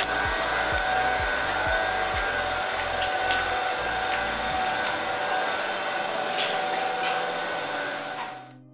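Steady whirring hum of brewery machinery, with a constant whine in it and a low pulsing underneath that stops about halfway through.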